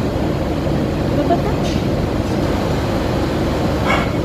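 A steady, loud low rumble of background noise, with faint voices over it.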